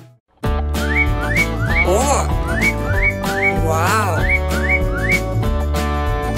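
Bouncy children's cartoon background music that starts after a brief break, with short rising whistle-like slides repeating about three times a second and a warbling swoop twice.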